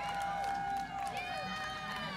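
Several spectators cheering and calling out at once, their shouts overlapping, over a steady held tone.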